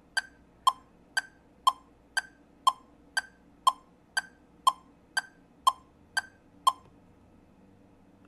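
Metronome clicking at 60 beats a minute subdivided into eighth notes: two clicks a second, alternating a higher tick and a lower tock, stopping about seven seconds in. The clicks are an eight-beat count-off before the exercise.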